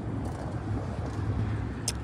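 Steady low outdoor rumble, with a short click near the end.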